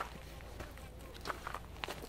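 Faint footsteps on a muddy path, a few soft, irregular steps.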